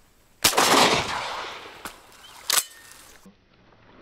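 Shotgun shot at a flying duck about half a second in, its report rolling away over the water for about a second. A second, shorter bang follows about two seconds later.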